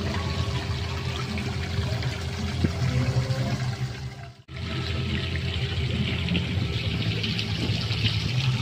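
Steady splashing and rushing of water from an outdoor tiered fountain falling into its basin. The sound breaks off for an instant about halfway through, then carries on the same.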